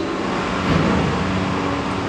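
Steady rushing noise with no clear tone or rhythm, holding level throughout.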